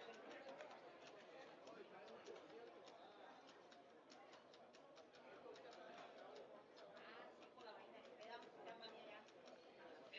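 Very faint field ambience of distant voices and chatter, with scattered faint ticks.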